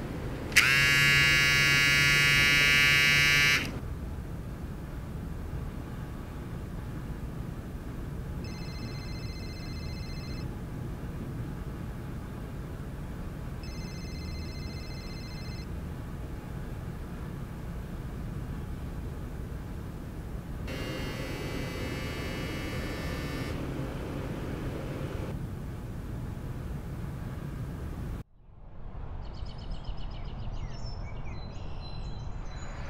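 A harsh electric school bell buzzes for about three seconds near the start, the loudest sound. Later a mobile phone rings twice, each ring a two-second burst of a few high tones about five seconds apart. A rougher, buzzier ring follows about twenty seconds in.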